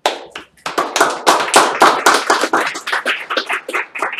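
Audience applauding, starting suddenly and thinning out near the end.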